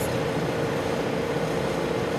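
Steady background hum and hiss with a constant mid-pitched tone running evenly throughout.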